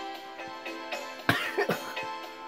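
Music with steady held notes, broken by a person coughing twice in quick succession a little over a second in; the coughs are the loudest sounds.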